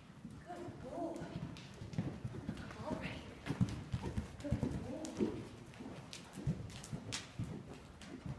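Hoofbeats of a horse cantering under a rider on soft, churned dirt arena footing, an irregular run of dull strikes.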